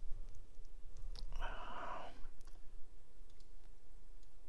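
A few faint, scattered clicks and a short breathy hiss about a second and a half in, over a steady low hum.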